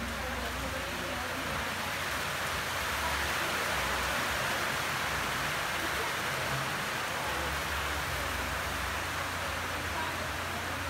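Steady rushing noise that swells slightly a few seconds in, over a low hum.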